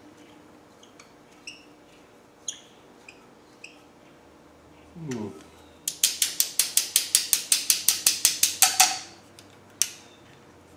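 A hand tool working at the rusty breather fitting on a Land Rover's rear differential housing to free it: a few light metallic clinks, then about three seconds of sharp, evenly spaced clicks, roughly seven a second.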